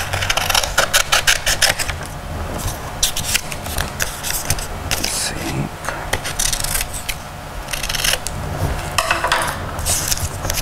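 Scissors cutting brown construction paper: repeated sharp snips in short runs with brief pauses, mixed with paper rustling as the sheet is turned.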